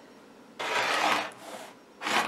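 Rotary cutter drawn once along the edge of a quilting ruler, slicing through pieced fabric onto a cutting mat. The cut starts about half a second in and lasts about a second as a rough, even scraping that fades out.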